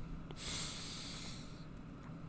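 A man's breath drawn in sharply through the nose close to the microphone, a faint hiss lasting a little over a second.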